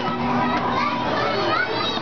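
Busy hubbub of many children's voices, chattering and calling over one another, in a crowded game arcade.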